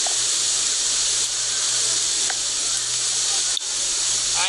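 Steady hiss with a low hum underneath and a single faint click about three and a half seconds in.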